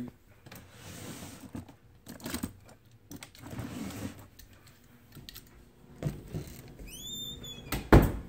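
Handling noise from toys being rummaged through and the phone moved: scattered bumps, rustles and clicks, with a brief high rising squeak about seven seconds in and a sharp knock, the loudest sound, just before the end.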